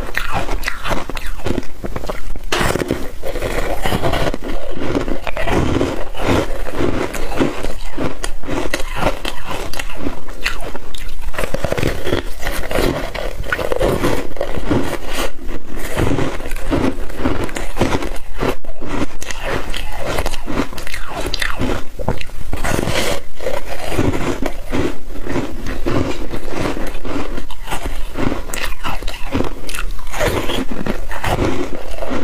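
Close-miked biting and crunching of frozen foam ice, a dense run of irregular crackles as pieces are bitten off and chewed.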